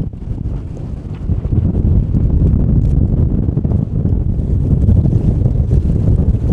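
Gale-force wind buffeting the microphone: a loud, gusting low rumble, weaker for about the first second and a half and then rising.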